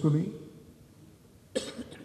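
The end of a man's spoken phrase, a lull, then one short cough about one and a half seconds in.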